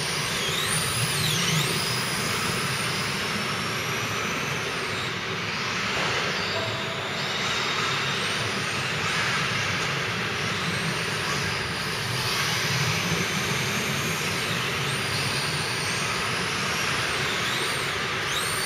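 Several 1:10 electric RC touring cars racing: high motor whines glide up and down as the cars speed up and slow, over a steady rushing noise.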